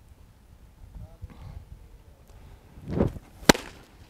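A pitched baseball smacks into the catcher's mitt with a single sharp pop about three and a half seconds in. Half a second earlier there is a short rush of noise from the pitcher's delivery.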